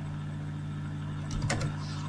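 A steady low hum, with a brief burst of computer keyboard keystrokes about one and a half seconds in.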